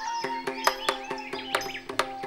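Carnatic ensemble music: a steady drone under a regular beat of sharp percussion strokes, with a high melodic line that slides and wavers in ornamented turns.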